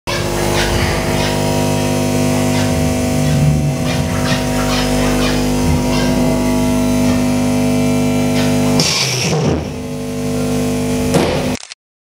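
Live experimental noise music: a loud, dense amplified drone of many held tones, dotted with scattered clicks. About nine seconds in the drone breaks off into rougher noise, and the sound cuts off abruptly just before the end.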